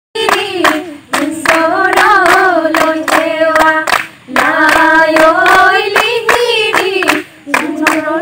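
A group of women singing a Jeng Bihu folk song in unison, keeping the beat with hand claps about three times a second, with short breaks for breath between phrases.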